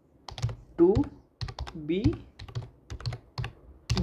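Computer keyboard typing: a quick, uneven run of keystroke clicks as a line of code is typed.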